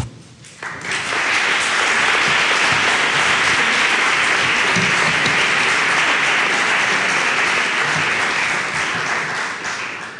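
Audience applauding, starting just under a second in and tapering off near the end.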